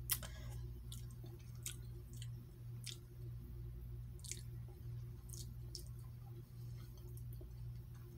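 Faint wet mouth clicks and lip smacks, scattered irregularly, from tasting a spoonful of yogurt, over a low steady hum.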